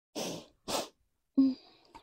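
A woman's two short breathy puffs of air in quick succession, followed by a brief voiced syllable.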